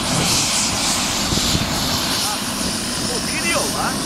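Helicopter running on the ground: a loud, steady rotor and engine noise.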